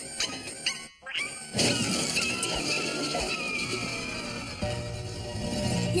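Cartoon soundtrack music with dog sound effects. About a second and a half in it jumps to a louder, dense commotion.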